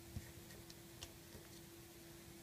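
Faint, irregular small clicks of a crochet hook catching and pulling rubber loom bands, about five in two seconds, over a steady low hum.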